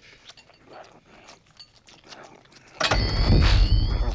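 A fairly quiet stretch with faint small clicks, then, about three seconds in, a sudden loud film sound effect for the green ghost Slimer: a deep rumble with high steady whining tones and falling glides.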